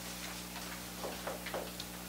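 Faint, irregular ticks and rustles of paper being handled at a meeting table, over a steady low electrical hum.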